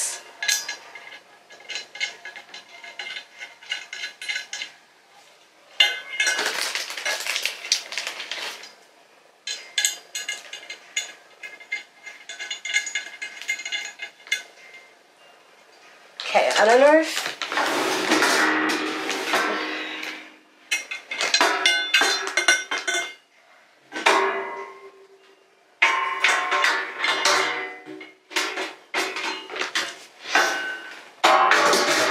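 Painted metal frame parts and tray of a rolling utility cart clinking and knocking against each other as it is put together by hand, in irregular clusters of clatter with short quiet gaps.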